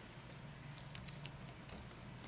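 Faint handling noise: a quick run of light ticks and rustles, with a steady low hum from the room.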